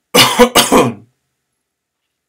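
A man loudly clears his throat in two quick bursts lasting about a second.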